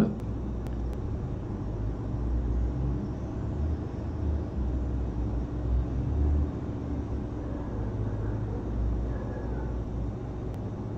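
Low, steady background rumble with no speech, its level wavering slightly.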